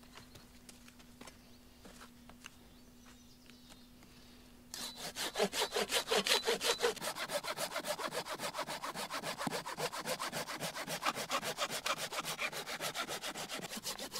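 Folding hand saw cutting into a rotten pine log, starting about five seconds in with fast, even back-and-forth strokes that run on steadily. Before that, only a few faint clicks.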